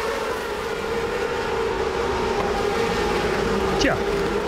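GP2 single-seater race car engine running at high revs, a steady pitched note with a quick falling sweep near the end, heard on the broadcast's trackside sound.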